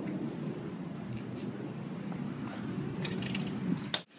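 A steady low rumble of background noise, with a few faint clicks about three seconds in.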